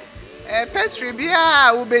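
A voice singing a repeated 'yeah, yeah' refrain with music, including a long, falling held note.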